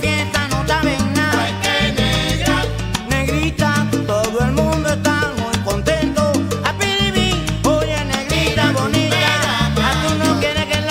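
A salsa track playing, with a stepping bass line under a sung lead and dense band accompaniment.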